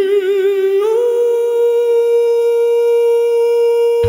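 A male singer holds one long high note into the microphone without accompaniment. It wavers with vibrato at first, steps up in pitch about a second in, and is then held steady.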